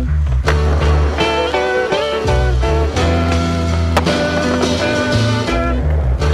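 Background music with a moving bass line, held chords and a steady beat.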